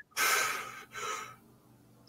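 A man breathing in audibly close to the microphone between phrases: a longer intake, then a shorter, fainter breath.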